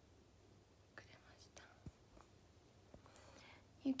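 Mostly quiet, with a few faint whispers and soft clicks; a young woman starts speaking aloud just before the end.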